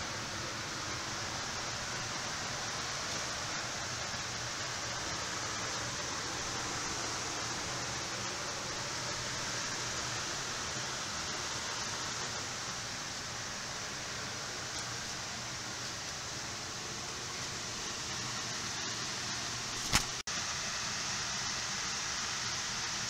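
Steady, even rush of air from an electric fan circulating air in a hoop house greenhouse, with a single click and a momentary dropout near the end.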